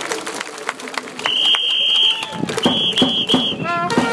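A cheer leader's whistle in a baseball cheering section: one long shrill blast, then three short ones, over crowd chatter and scattered clapping. Near the end the cheering-band trumpets come in with a falling run.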